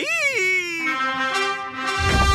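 Cartoon trumpet fanfare: brass notes held long, a single note at first, then several notes sounding together as a chord from about a second in.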